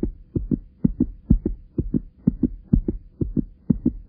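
Heartbeat sound effect: paired low thumps, about two beats a second, over a faint steady hum.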